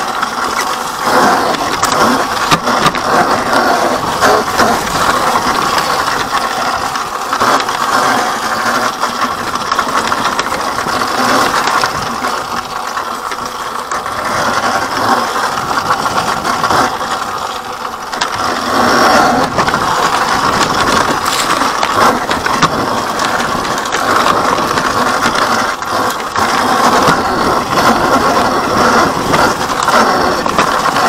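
Electric dirt bike ridden over a rocky trail: a loud, continuous clatter of the bike's frame and parts rattling and its tyres crunching over stones and dry leaves, full of sharp knocks.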